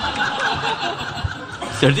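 An audience laughing and chuckling together, a busy murmur of many voices, until a man's voice starts speaking again near the end.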